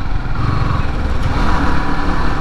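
A Yamaha R15 V3 motorcycle riding in city traffic: its single-cylinder engine runs steadily under heavy wind and road noise.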